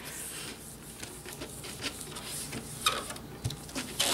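Hands rubbing and pressing a sheet of shrink-plastic film down onto an adhesive cutting mat, giving soft swishing and rustling with a few light clicks.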